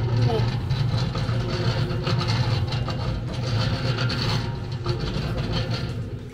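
Steel rolling mill running: a steady low mechanical hum with clatter, easing off near the end.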